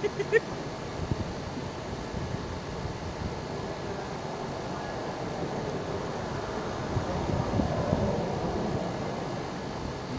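Steady highway traffic noise, with a vehicle passing and growing louder about seven to nine seconds in.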